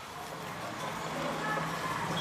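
Chalk writing on a blackboard, under a low steady hum and faint noise that slowly grow louder, the hum coming in about halfway through.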